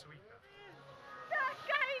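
High, wavering voices calling out, starting a little past halfway, over faint steady music.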